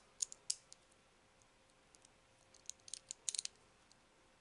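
Faint light clicks of a small screwdriver turning a screw into the plastic knuckle joint of an action-figure display stand arm. A few ticks come near the start and a quick cluster comes about three seconds in.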